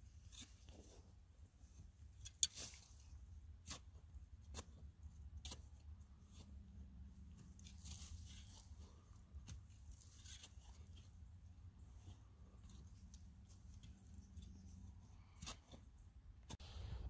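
Near silence: a faint low rumble with scattered small clicks and rustles, the sharpest click about two and a half seconds in.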